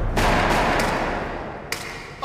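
A gunshot with a long fading echo, then a shorter sharp crack near the end.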